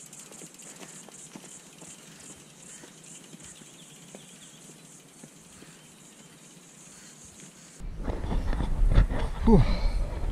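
Faint bush ambience with a high insect buzz pulsing a few times a second and a few faint ticks. About eight seconds in it changes suddenly to loud wind buffeting the microphone and a man's breathless voice with a falling sigh after a steep climb.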